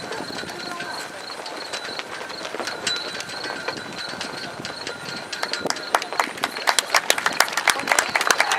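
Hoofbeats of a cantering horse on the arena footing, getting louder and sharper from about five seconds in as it comes close, over a steady murmur of crowd voices.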